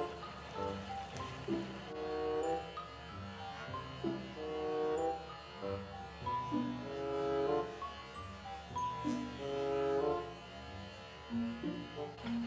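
Soft background music: a slow melody of held notes.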